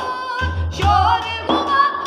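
Several women's voices singing a naat, a devotional Islamic song, together in long, sliding melismatic lines, with a hand-struck frame drum (daf) beating along underneath.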